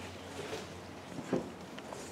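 A short, soft knock of MDF panels being handled and pressed into place about a second in, with a smaller tap just before it, over a low steady hum.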